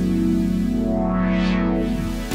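Layered Reveal Sound Spire software-synthesizer pads holding a sustained chord, a sequenced pad whose brightness swells up and falls back in a repeating pattern.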